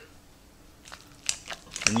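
A fork mashing and stirring potatoes in a ceramic bowl, with a few short scrapes and taps against the bowl starting about a second in.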